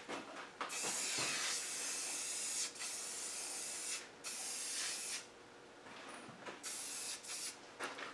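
Aerosol can of black spray paint hissing in a series of bursts as light coats go onto a starter motor housing: a long burst of about two seconds, two shorter ones, then a few brief puffs near the end.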